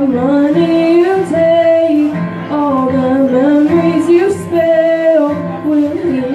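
A woman singing long held notes that step and glide up and down in pitch, accompanied by acoustic guitar.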